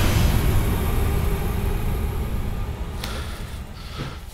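Dramatic score sting: a deep booming wash that hits just before and fades slowly, with a faint click about three seconds in.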